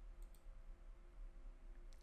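Near silence: faint room tone with a few soft computer mouse clicks, a couple near the start and one near the end.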